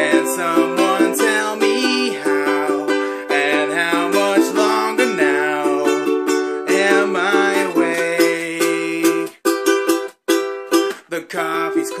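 Ukulele strummed in a steady rhythm, with a man singing over it. A little before the end, the strumming breaks off in two short gaps and then resumes.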